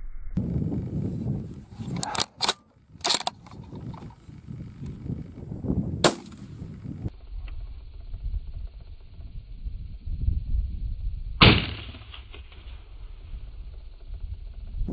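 A rifle shot about three-quarters of the way through, the loudest sound, with a ringing echo tail after it. A sharp crack comes about halfway through, a few sharp clicks come earlier, and a low steady rumble runs underneath.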